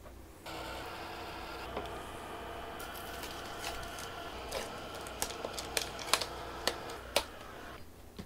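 Small handheld hair dryer running steadily, blowing on a cardboard box to loosen the packing tape, with scattered clicks of the box being handled. It starts about half a second in and stops shortly before the end.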